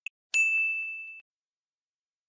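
A single bright ding, a bell-like chime sound effect struck once and ringing out for just under a second, with a faint tick just before it. It marks the change to the next reading slide.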